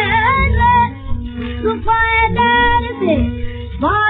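Woman singing a Hindustani song from a 1931 Columbia 78 rpm shellac record, over instrumental accompaniment, with long held notes and sliding pitch near the end.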